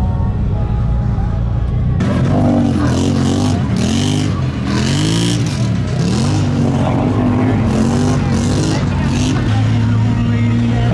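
ATV engines: a steady idle for about two seconds, then an ATV engine revving up and down again and again as it churns through deep mud.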